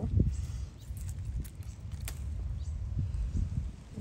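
Hands rustling among pea plants and pulling a small oak seedling out of pebbly garden soil, with a few sharp clicks, over a steady low rumble on the microphone.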